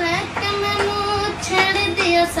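A boy singing a Punjabi song solo, holding long, steady notes with brief slides between them.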